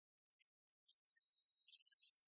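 Near silence, with faint, scattered short high-pitched chirps starting about a second in.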